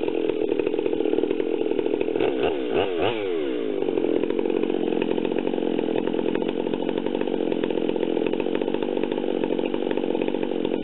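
Stihl chainsaw engine running steadily and loudly, its pitch wavering briefly about two to three seconds in before settling again.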